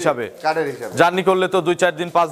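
A man speaking, the words not transcribed.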